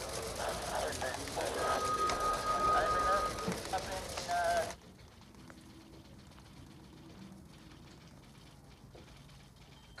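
Indistinct overlapping background voices and bustle, with a steady high tone held for about two seconds in the middle. About five seconds in it cuts off abruptly to a quiet room hum.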